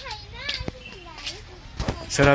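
Faint voices of children talking and calling in the background, with two soft knocks about a second apart.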